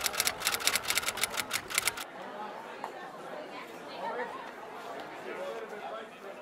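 A quick run of typing key clicks, several a second, stops about two seconds in, leaving a murmur of background chatter.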